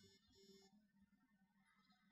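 Near silence: faint room tone, with two very faint short tones in the first second.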